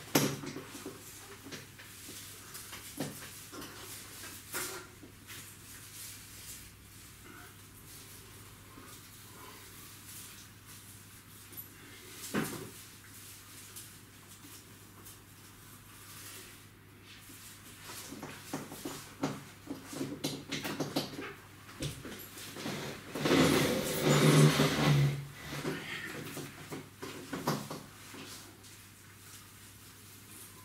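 Rustling and handling noises of a tinsel garland being hung along a wall, with scattered small clicks and a sharp knock about twelve seconds in. Near the three-quarter mark comes a louder stretch of rustling with a brief low hum.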